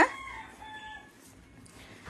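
A rooster crowing once: the call is loudest at the very start, then holds its pitch and trails off by about a second in.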